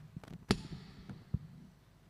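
Knocks and clicks of a microphone being handled and fitted onto its stand, picked up through the hall PA: a sharp knock about half a second in with a short ringing tail, a lighter one about a second later, and small ticks between.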